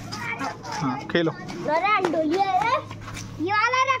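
Children's voices talking and calling out over one another, with two high-pitched calls, the second near the end. A steady low hum runs underneath.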